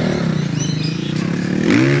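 Dirt bike engine revving as it rides by, its pitch sliding down and then climbing again.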